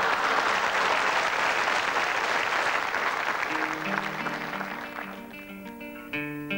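Studio audience applauding, dying away over about five seconds. About three and a half seconds in, an archtop guitar starts picking a run of single notes.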